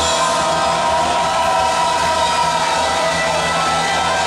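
Choir worship music through a PA, voices holding long sustained notes over a steady bass.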